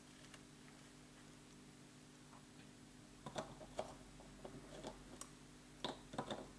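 Near silence with a faint steady hum, then from about halfway a few light clicks and taps of small craft supplies being handled on a tabletop.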